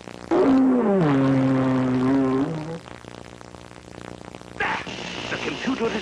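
Cartoon electronic machine sound effect: a loud buzzy tone that slides down in pitch about a third of a second in, then holds steady for about two seconds before stopping. It is the villain's electromagnetic beam machine switching on as its button is pressed. A voice follows near the end.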